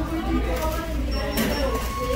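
Voices of other people talking in the background over a steady low hum, with a sharp click about a second and a half in and two short steady beep-like tones near the end.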